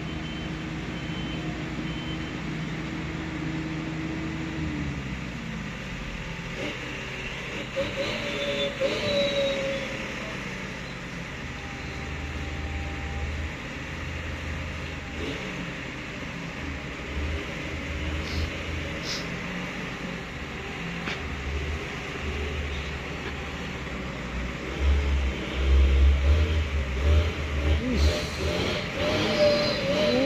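Diesel engine of a Hino truck labouring as it climbs a rutted, muddy dirt track, with a deep low rumble that swells loudest a few seconds before the end as the truck draws near.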